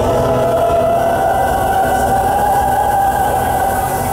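Live metal band playing loud, with distorted guitars holding a sustained chord over dense drumming.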